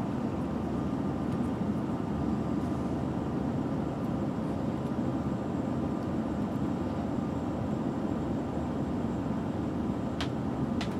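A steady low rumble of running machinery, with a faint thin high whine over it and a few faint light clicks.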